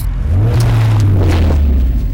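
Deep engine rumble of a heavy vehicle in a film soundtrack, rising in pitch about half a second in and then slowly dropping away.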